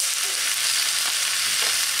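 Sliced bell peppers and onions sizzling in oil in a hot cast-iron skillet, a steady hiss.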